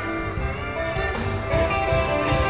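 Live band playing an instrumental passage led by guitars, with no vocals.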